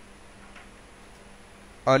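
Quiet room tone with a faint steady low hum, then a man begins speaking near the end.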